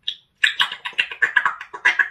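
African grey parrot vocalising: a brief call, then a fast run of short, clipped chattering notes, about seven a second.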